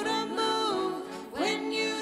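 A woman singing a slow Christian worship song into a handheld microphone over instrumental accompaniment: a held note, a short breath a little past a second in, then a new phrase.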